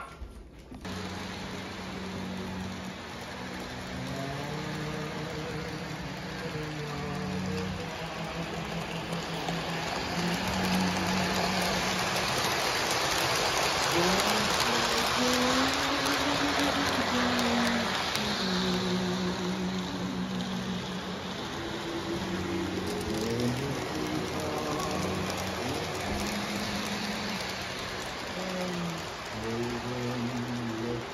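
Background music, a slow melody of held notes, over a steady rolling rumble from a model train running on its track. The rumble grows louder through the middle as the train comes close, then eases off.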